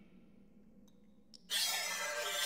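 Near silence with a couple of faint ticks, then about a second and a half in, a music cue starts with a bright, high shimmer and held notes.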